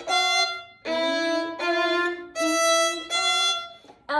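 Solo violin playing a slow run of about five separate bowed notes, alternating E and F natural between the low and high octave.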